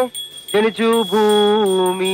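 A voice chanting a prayer in long held notes, starting about half a second in, with short dips in pitch between notes.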